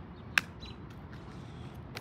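A single sharp click about a third of a second in, as a hatchet head taps a lithium-ion phone battery pouch lying on gravel. The cell makes no sound of its own.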